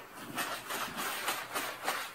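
Folded paper towel patting and rubbing over damp fresh dill laid on paper towels, a soft papery rustle repeating about three times a second as the water is blotted off.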